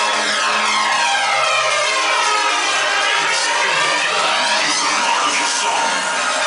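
Loud hardstyle DJ-set music in a breakdown without the bass drum, carried by a sweeping jet-like whoosh that falls and then rises in pitch.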